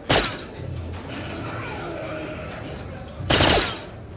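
Electronic soft-tip dartboard machine playing its dart-hit sound effects as darts land: two short loud electronic effects about three seconds apart, each with a falling sweep, one just after the start and one near the end.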